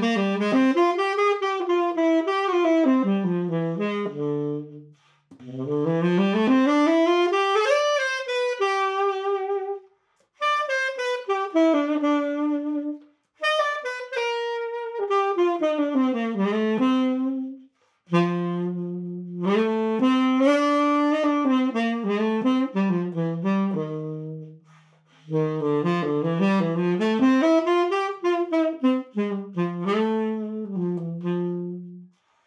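A relacquered 1963 Selmer Mark VI tenor saxophone played solo and unaccompanied. It plays a run of melodic phrases that climb and fall, broken by brief pauses every few seconds.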